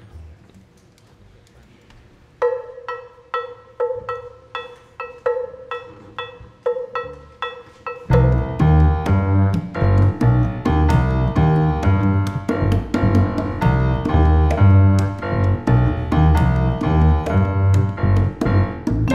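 A Latin jazz quartet starts a tune in triple meter: after a brief quiet, one instrument plays a sparse repeated pitched figure, and about eight seconds in the full band comes in with piano, double bass, congas and vibraphone.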